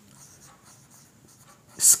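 Marker pen writing on a whiteboard: faint strokes as letters are written. The start of a spoken word comes in just before the end.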